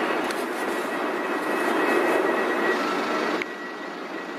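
A steady rushing noise, like passing traffic, that cuts off suddenly near the end.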